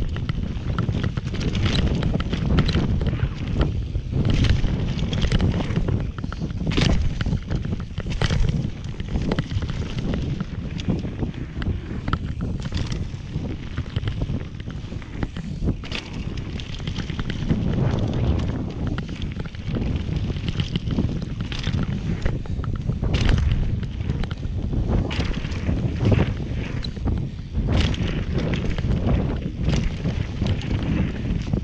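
Mountain bike descending a dirt downhill trail at speed: heavy wind rush on the camera microphone over the rumble of tyres on dirt, with frequent sharp clatters from the bike over bumps and jumps.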